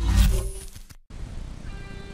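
Logo transition sting: music with a deep rumbling sound effect that dies away to a brief silence about a second in, followed by quiet background music.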